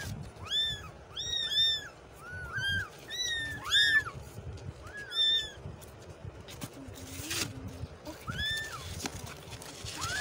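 Several young kittens mewing over and over: short, high-pitched mews that rise and fall, coming thick and fast for the first half, pausing a little past halfway, then starting again.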